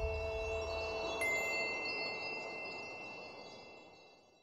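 Closing music: two held notes and a low rumble die away, then about a second in a bright chime strikes and rings on in many high tones, fading out.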